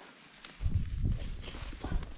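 Uneven low rumble of wind buffeting the camera microphone, with faint rustling and knocking as a rock is picked up off dry, grassy ground, starting about half a second in.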